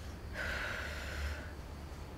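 A woman draws one quick audible breath, about a second long, between spoken phrases, over a faint low hum.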